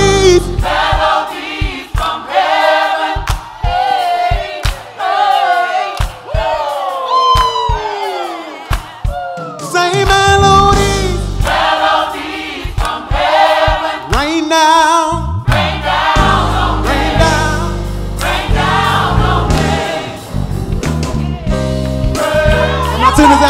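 Gospel choir singing a praise song over backing music. A couple of seconds in, the low accompaniment drops away and the voices carry on with long notes sliding down in pitch. At the halfway point the full backing comes back in.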